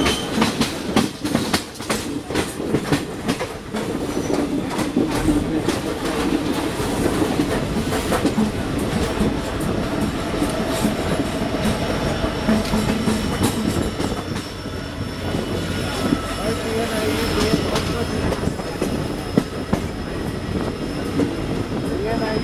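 Wheels of an Indian express train's coaches running at speed over a junction's points and rail joints, heard from an open coach door: a rapid run of sharp clacks over the first few seconds, then a steady rumble of wheels on rail, with a faint high whine near the end.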